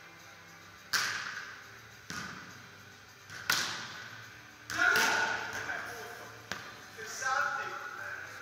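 A volleyball being struck again and again in serve-and-pass drills, about six sharp smacks in eight seconds, each echoing in a large indoor hall, with players' voices calling in between.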